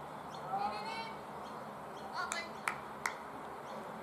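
Short shouted calls from players on a cricket field, then two sharp cracks a little under half a second apart, over a steady outdoor background hiss.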